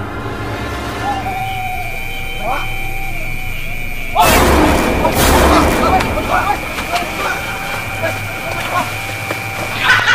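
A steady high electronic tone. About four seconds in, a sudden loud boom, then people shouting and screaming in fright for a few seconds.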